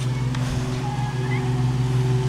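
A steady, unchanging low motor hum, with a faint short rising chirp a little past halfway.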